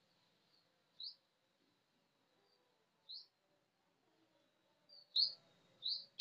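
A small bird chirping: a few short, high, upward-flicking chirps a second or two apart, the loudest about five seconds in, over faint background.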